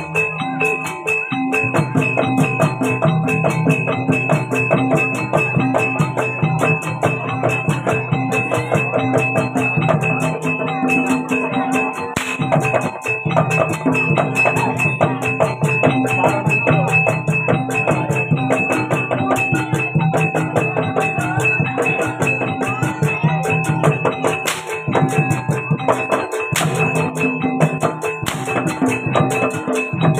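Live jaranan gamelan ensemble playing the kuda lumping accompaniment: a steady, busy rhythm of hand drums and rapid tuned metal percussion over held ringing tones.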